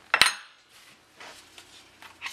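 A single sharp metallic click from AR-15 rifle parts being handled, with a brief ring, followed by faint handling noise.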